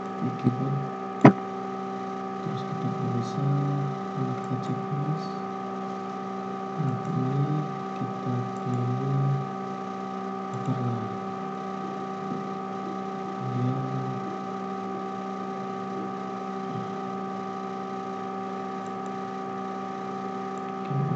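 A steady hum made of several held tones, with short stretches of low, indistinct speech now and then and a sharp click about a second in.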